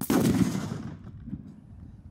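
A single sudden loud bang that dies away over about a second.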